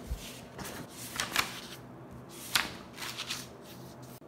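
Paper rustling and light knocks as a spiral-bound notebook of printed notes is slid onto a desk and its pages handled, in several short swishes, the loudest about a second and a half in and again past two and a half seconds.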